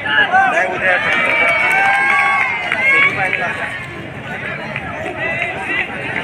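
Spectators and players shouting and calling out over one another during a kabaddi raid, loudest for the first three seconds and somewhat quieter after.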